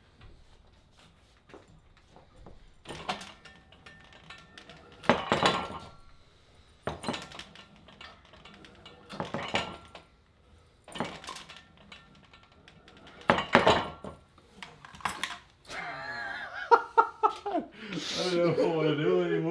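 Weight plates on a vector wrench's cable loading pin clanking against each other as the handle is lifted and set down for repeated reps, about seven clanks a couple of seconds apart. A man's voice comes in near the end.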